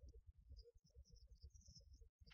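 Near silence: a faint, uneven low rumble with faint, intermittent high-pitched chirping.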